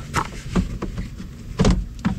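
Plastic clicks and knocks as a push-pin clip is worked out of the CX-5's plastic engine undercover and the panel is pulled at, a few separate sharp sounds with the loudest knock near the end.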